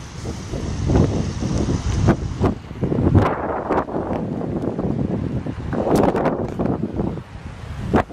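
Storm wind gusting against the microphone, loud and uneven, rising and falling with the gusts.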